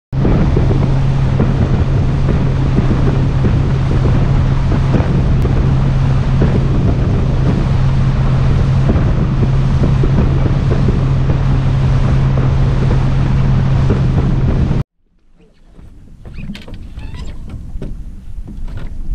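Boat running across open water: a steady low engine drone under heavy wind noise on the microphone. It cuts off suddenly about 15 seconds in, giving way to much quieter outdoor sound.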